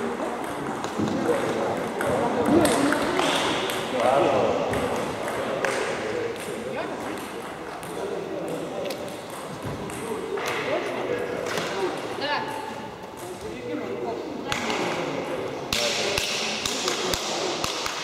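People talking in a gym hall, with scattered light clicks of a table tennis ball.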